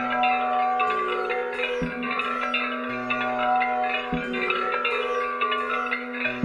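Instrumental music played on Meruvina, in raga Madhmad Sarang: a fast melody of short notes over a steady held drone, with a low bass note struck twice.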